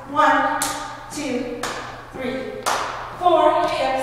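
A woman's voice calling out the dance count in a rhythmic, sing-song way, punctuated by sharp percussive hits about once a second.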